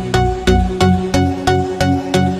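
Electronic background music with a steady beat, about three beats a second, over a sustained bass line.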